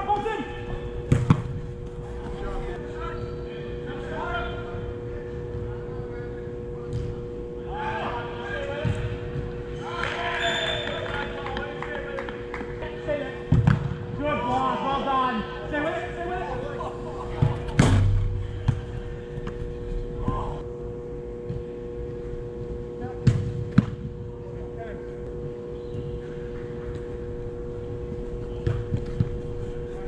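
Indoor soccer game heard from the goal: players' shouts and calls, with several sharp thuds of the ball being kicked or hitting the boards. The loudest thud comes a little past the middle, over a steady hum in the hall.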